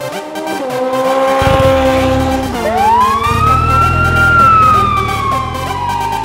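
Police siren wailing: its pitch climbs over a couple of seconds, then slowly falls, over a low rumble.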